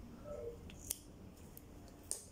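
Scissors snipping through a strip of adhesive tape once, a single sharp snip about a second in.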